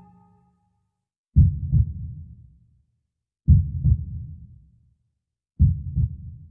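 Slow heartbeat-like double thumps in a soundtrack cue: three low "lub-dub" beats about two seconds apart, each fading away.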